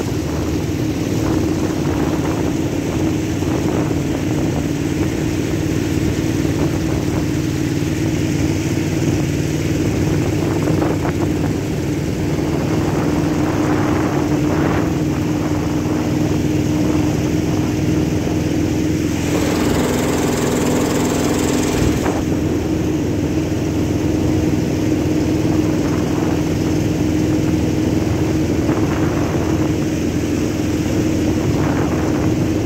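Outboard motor on a small river boat running steadily under way, a constant engine drone with a slight shift in pitch partway through. A short rush of hiss rises over it about twenty seconds in.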